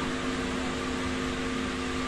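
Steady background hum and hiss, with a few low steady tones in it and no change in level, of the kind a running fan or other small machine makes.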